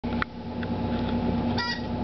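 A rubber duck squeeze toy gives one short, high, wavering squeak near the end, over a steady hum.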